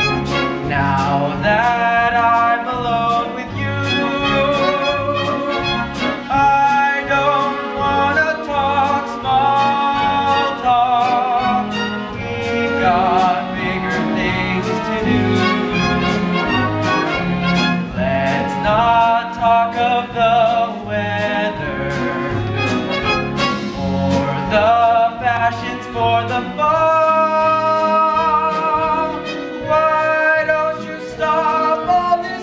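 Orchestral music: a wavering melody line over a steady, regular bass beat.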